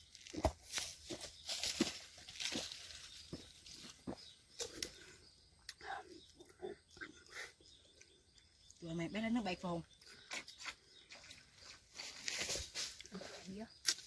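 Scattered short sips and handling noises of people drinking from small fruit shells, with a brief murmur of voice about nine seconds in.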